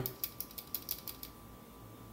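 Quick light clicking and scraping of multimeter probe tips against solder points on a CRT TV circuit board, about eight clicks a second for the first second or so, then dying away. The meter gives no continuity beep: the fusible resistor under test is open.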